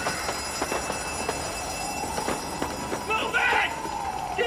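Several people running on a pavement sidewalk, quick, irregular footfalls slapping the concrete, with a shout about three seconds in.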